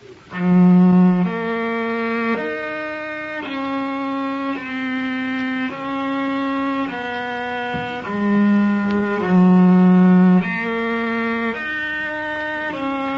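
A cello playing a slow practice exercise: long bowed notes, each held about a second, stepping up and down in pitch.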